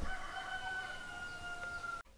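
A rooster crowing: one long call that starts with a few short rising notes and then holds a steady pitch, sagging slightly toward the end.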